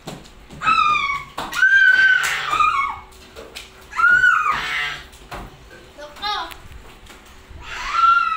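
Children squealing and shrieking at play: high-pitched voiced calls, the longest about a second and two seconds in and again about four seconds in, with shorter calls between.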